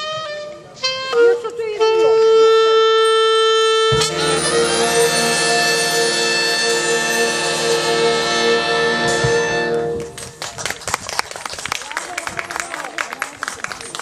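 A swing big band of saxophones and brass holds a long final chord, which cuts off about ten seconds in. Audience applause follows.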